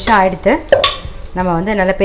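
A stainless steel bowl knocking against a wooden board as it is set down and handled, with one sharp clink about three quarters of a second in. A woman is talking over it.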